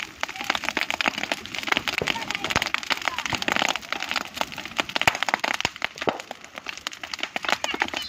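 Bonfire of dry palm fronds and brush burning hard, with dense, rapid crackling and sharp pops.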